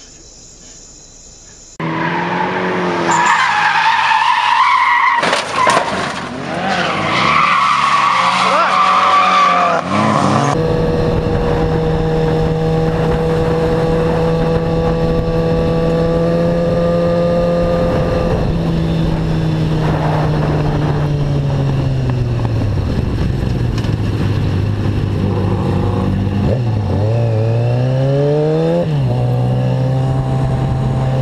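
Sport motorcycle engine running at steady high revs, heard from on the bike with wind noise. The revs fall off, then climb and drop in a few quick glides near the end.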